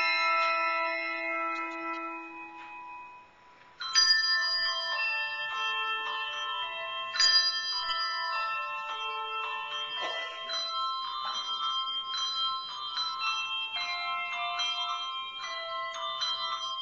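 Handbell choir playing: a held chord rings and dies away, a brief near-silent pause follows, and about four seconds in the ringers strike a new chord and carry on through a series of changing chords.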